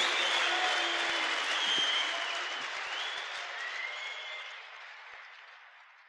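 Concert audience applauding, the applause fading out steadily to almost nothing by the end.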